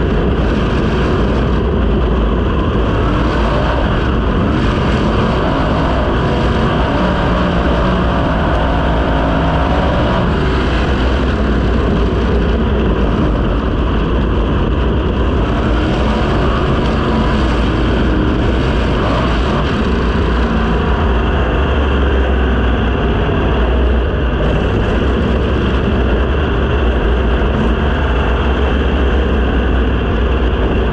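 The 410-cubic-inch V8 of a USAC non-wing sprint car, heard onboard, running hard and loud without a break. Its pitch rises and falls with the throttle through the turns.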